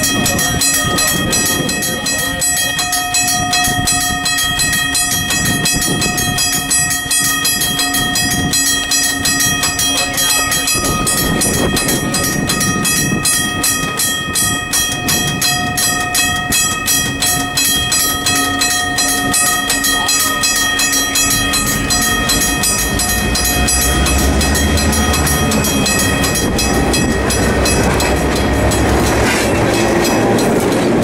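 A grade-crossing warning bell rings in rapid, even strokes while an EMD GP18 diesel locomotive approaches on the track. The locomotive's engine rumble grows louder over the last third as it comes alongside.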